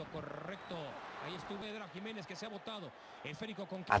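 Speech only: a man's voice from a television football broadcast, talking steadily and fairly quietly.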